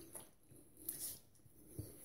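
Near quiet, with a few faint, short, soft rubs and one light bump as fingers feel over a freshly shaved chin and neck.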